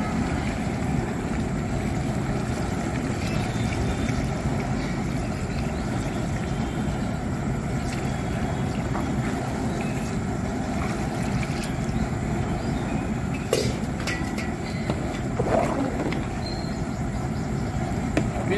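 Steady low rumbling noise under a long metal ladle stirring chicken kurma in a large aluminium cooking pot, with two short knocks in the last third of the clip.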